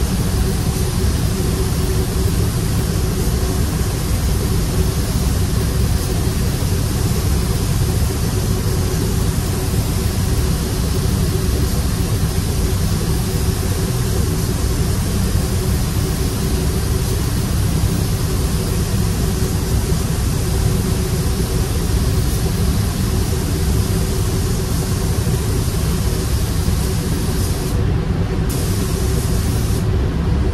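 Continuous hiss of a compressed-air spray gun laying paint, over the steady low rumble and hum of the spray booth's ventilation. The hiss cuts out for about half a second near the end, then resumes.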